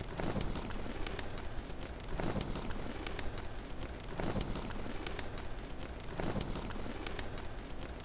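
Rock pigeon cooing, a low call repeating about every two seconds, over a dense dry crackle of rustling feathers.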